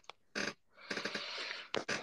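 A person's voice, faint and indistinct, in a few short broken snatches like muttering or breath.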